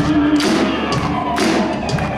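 Live country band music: electric guitars holding notes over a steady drum beat, with sharp hits about twice a second.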